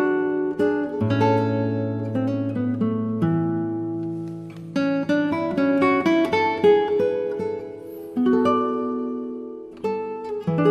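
Acoustic guitar playing calm relaxation music: plucked notes and chords ringing out over held bass notes.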